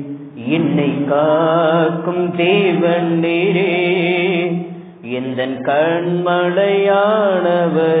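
A group of singers singing a Tamil Christian worship song in long, wavering phrases, with short pauses between lines just after the start and about five seconds in.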